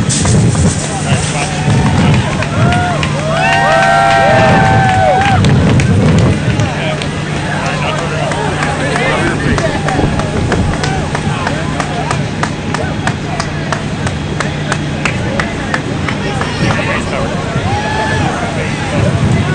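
Steady low hum of an engine running for most of the time, stopping near the end, with people talking in the background. Through the middle, many sharp crackles and pops as the dorm-room fire burns.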